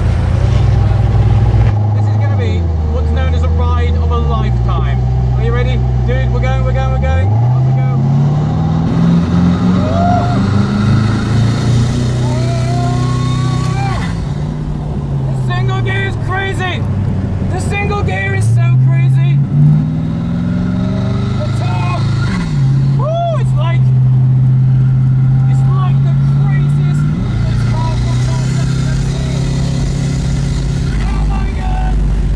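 Koenigsegg Regera's twin-turbo V8 running low and steady, then revving up about seven seconds in and rising and falling in pitch in several smooth sweeps without gearshift steps as the single-gear car pulls up the hill and eases off. Voices can be heard behind it.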